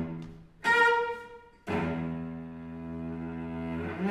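Solo cello played with the bow: a short, accented note about a second in, then a long low note held through the second half.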